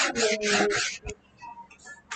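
A stylus rubbing across a tablet screen in several short strokes as a line is drawn, stopping about a second in.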